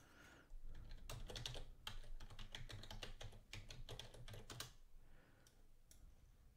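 Computer keyboard keys typed in a quick, irregular run for about four seconds, entering a word, then stopping; faint.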